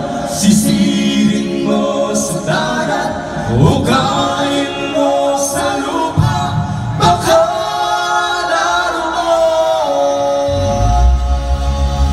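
Live rock band performing: sung vocals over electric guitar, with cymbal strokes, and a deep low end from bass and drums coming in near the end.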